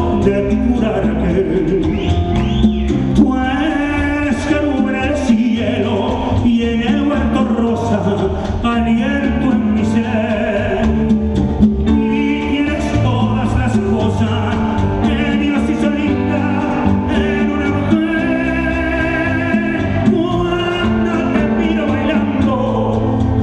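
A live Latin band playing in a concert hall, with a male lead singer over the band.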